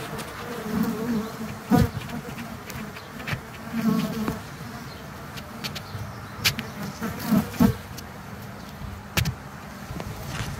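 Honey bees buzzing close to the microphone at a hive entrance, with single bees passing by in swelling buzzes about a second in, around four seconds and again near seven and a half seconds. A few sharp clicks are scattered through it.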